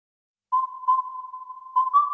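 Opening of a music track: a single high steady note comes in about half a second in and is held, re-struck about four times.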